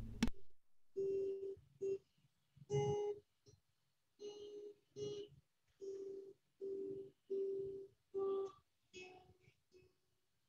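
Guitar playing a slow finger exercise: single picked notes, one at a time, on the high strings. The sound comes through a video call, so the notes are chopped, each cutting off into a short gap. A sharp click opens it.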